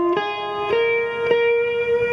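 Blues guitar notes played one at a time, with a short slide up into a higher note about half a second in; the note is picked again and left to ring.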